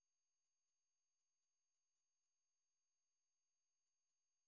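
Near silence: the recording is all but empty between narrated phrases.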